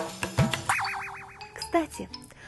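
Interlude jingle: a short music phrase ends just after the start, then cartoon sound effects follow: a boing, a rapid warbling whistle, and a short falling glide near the end.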